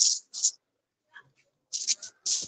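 A pause in a man's close-miked radio commentary: almost silent, broken by a few short, hissy breaths.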